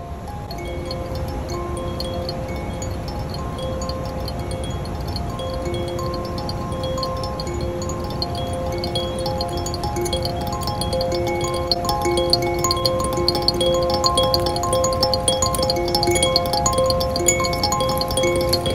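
Hokema B5 five-note kalimba, its metal tines plucked over and over in a quick, repeating pattern, the notes ringing into one another over a low rumble.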